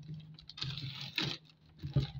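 Brown pattern paper rustling and crinkling as hands smooth and crease a folded paper band flat, in a few short scratchy bursts, the loudest about a second in and near the end.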